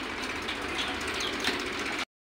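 Small birds chirping faintly, a few short calls that drop in pitch, over a steady background hiss.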